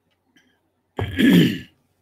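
A man clearing his throat once, a short loud rasp about a second in.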